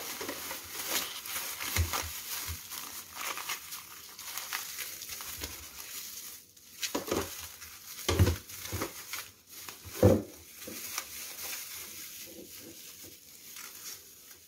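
Thin plastic bag crinkling and rustling as it is twisted and knotted shut around a frozen block of grated carrot. A few soft knocks come through, the loudest about ten seconds in.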